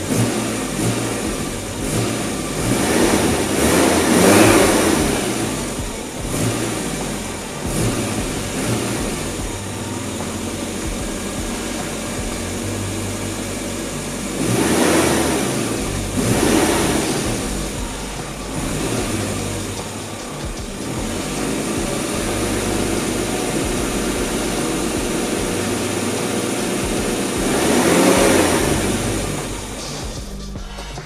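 1989 Austin Mini 30's standard 998cc A-series four-cylinder engine, with its standard exhaust, heard from the front of the car. It idles and is revved in short blips: several in the first few seconds, the biggest about four seconds in, more around fifteen to nineteen seconds in and one near the end, with steady idling in between.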